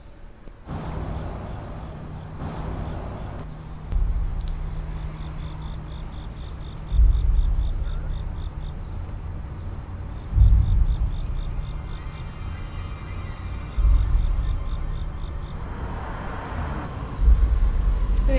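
Suspense film score: a steady drone with deep booming hits that come about every three and a half seconds and fade out, over the even chirping of crickets.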